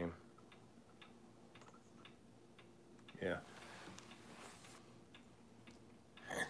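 Faint, regular ticking of a wall clock, about two ticks a second.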